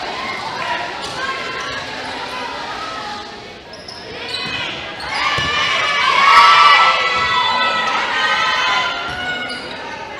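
Volleyball rally in a gymnasium: ball contacts with the echo of a large hall, under players and spectators shouting, loudest about six to seven seconds in.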